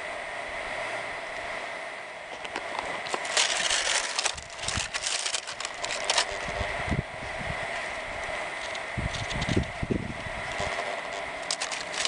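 Dry palmetto frond rustling and crackling as it is handled, the crackle densest a few seconds in and again near the end. Wind buffets the microphone in the second half.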